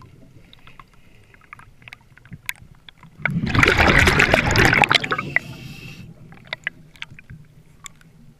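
Scuba regulator breathing underwater, heard from the diver's own camera. A faint hiss and small clicks come first, then about three seconds in a loud rush of exhaled bubbles lasts nearly two seconds before fading.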